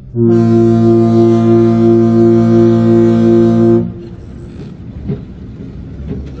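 A ship's horn sounds one long, steady, low blast of about three and a half seconds and then cuts off.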